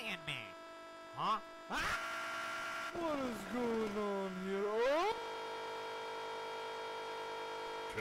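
A person's voice making a long drawn-out sound that dips in pitch and rises again about three seconds in, followed by a flat held tone, all over a constant hum.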